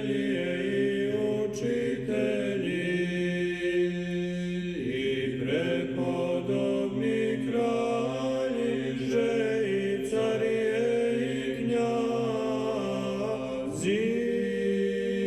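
An a cappella choir chanting slowly in Orthodox church style, long held notes moving in steps over a sustained low note.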